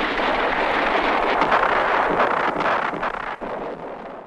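Battle noise under war footage: a loud rushing rumble with a few sharp cracks, fading away over the last second.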